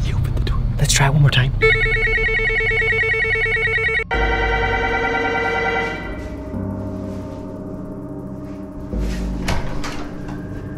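Electronic doorbell chime ringing two notes: a long first note starting about a second and a half in, cut off sharply about four seconds in by a second note that fades away by about six seconds.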